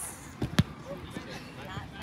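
A soccer ball struck by a foot on artificial turf: one sharp thud about half a second in, with faint voices from around the field.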